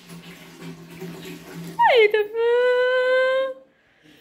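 A long drawn-out vocal call: it starts about two seconds in, falls sharply in pitch, then holds one steady note for about a second and a half before stopping, over a faint low hum.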